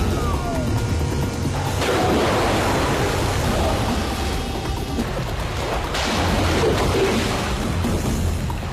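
Action-film fight soundtrack: music over water splashing as fighters kick and fall through ankle-deep water. There are sharp hits about two seconds in and again about six seconds in.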